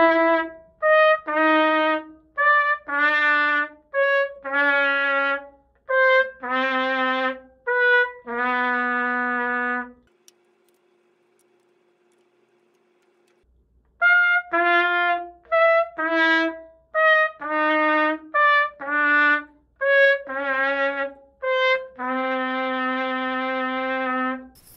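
Vincent Bach Artisan AP-190 piccolo trumpet played in an intonation demonstration: a series of short notes, each followed by a longer held note, first on the A lead pipe. After a pause of about three seconds, while the pipe is swapped, the same kind of series is played on the B-flat lead pipe, ending in a long held note.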